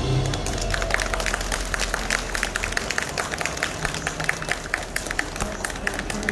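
An audience clapping and applauding, beginning as the violin music stops right at the start.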